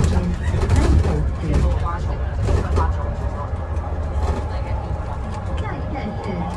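Cabin noise on the lower deck of an Alexander Dennis Enviro500EV battery-electric double-decker bus in motion: a steady low rumble from the road and drivetrain, with passengers' voices over it.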